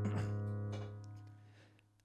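Korg SV-1 stage piano's low left-hand C sharp and G sharp ringing on and fading away, with a couple of light notes in the first second. The sound dies to near silence by the end.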